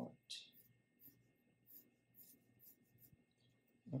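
Pencil sketching on drawing paper: faint scratchy strokes, one clearer stroke just after the start, then lighter ones about every half second.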